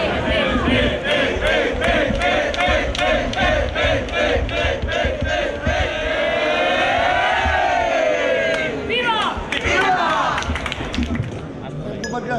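A group of people chanting together in a fast, even rhythm of about three shouts a second, then one long shout held together that rises and falls in pitch, followed by a few quick rising whoops.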